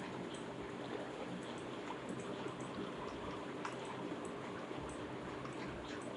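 Steady background hiss and room noise from an open microphone, with faint, scattered clicks such as a computer mouse makes while roto points are being placed and moved.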